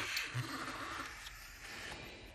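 Cardstock pages of a handmade paper explosion album rustling and scraping as it is handled and turned, with a short click at the start.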